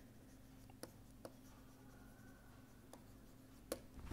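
Faint taps and scratches of a stylus writing on a tablet: a few sharp ticks spread across the seconds, the brightest near the end, over a low steady hum.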